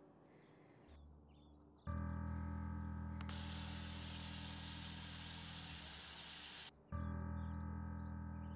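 A dramatic film-score stinger: a sudden loud, low, sustained brass-like drone comes in about two seconds in. A hissing rush of noise builds over it and cuts off abruptly near seven seconds, when the low drone strikes again.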